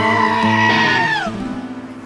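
A goat screaming once, a long held call that bends down and breaks off after about a second, over the final held brass-band chord of a song, which fades away near the end.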